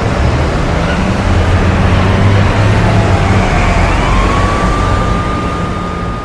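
Jet airliner engines heard from inside the cabin as the plane rolls on the runway: a loud, steady rumble. An engine whine rises about two-thirds of the way in and then holds steady.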